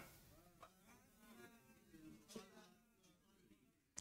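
Near silence, with only a very faint, wavering hum.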